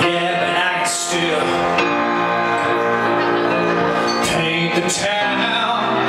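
Upright piano played live, sustained chords ringing on, with a man singing over it.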